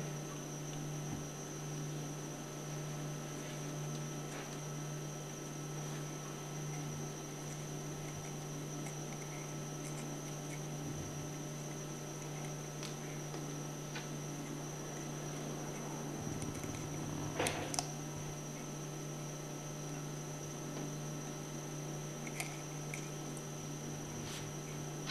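Steady low electrical hum and a thin high whine of room tone, with a few faint ticks from small parts being handled on a workbench.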